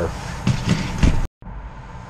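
A few short knocks and scrapes of hard objects being handled on a wooden workbench. About a second in, the sound cuts out abruptly, then a quieter steady room hum continues.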